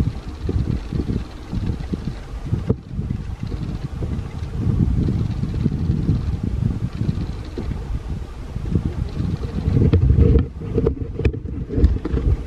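Low, gusting rumble of wind buffeting the microphone, rising and falling unevenly, with a few sharp clicks near the end.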